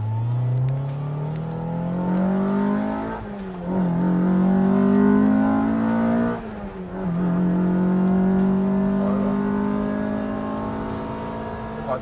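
Honda Civic Type R EK9's B16B 1.6-litre VTEC four-cylinder, heard from inside the cabin, accelerating through the gears. The revs climb, fall at an upshift about three seconds in, climb again, and fall at a second upshift just past halfway. Then they rise slowly in the next gear.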